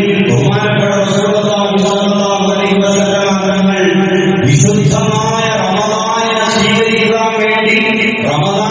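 A man's voice chanting in long, held melodic phrases, in the manner of Quranic recitation within a sermon, with a new phrase beginning a little past halfway through.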